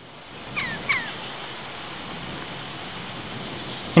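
A steady rushing noise, like wind on the microphone, with two short falling chirps from a bird about half a second and a second in.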